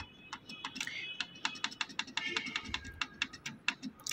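Rapid, repeated clicks of the arrow button on a Canon PIXMA G640 printer's control panel, about five presses a second, as it scrolls through characters during password entry.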